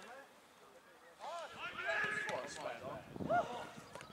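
Players' voices shouting and calling across a football pitch during an attack on goal. The shouts start after about a second of near quiet.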